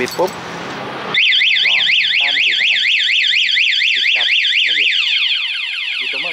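Aftermarket motorcycle anti-theft alarm siren going off on a Honda MSX, set off by turning the ignition with a key the alarm treats as a fake. It starts about a second in, warbling rapidly up and down, then changes to a repeated falling tone near the end.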